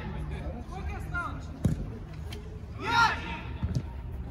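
A single sharp thud of a football being struck about a second and a half in, with players' shouts around it, the loudest a shout about three seconds in, and a few lighter knocks near the end.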